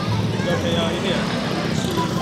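Street traffic: motor scooter engines running steadily as bikes pass, with crowd chatter behind.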